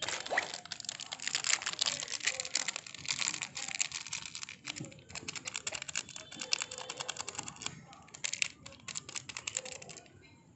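Plastic spice-masala packet crinkling as it is handled and shaken, a dense run of small crackles with a short lull about five seconds in.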